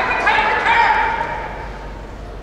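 Sumo referee (gyoji) giving a long, high-pitched shouted call to two wrestlers locked in a belt grip, the voice held on steady pitches and fading out a little before the end.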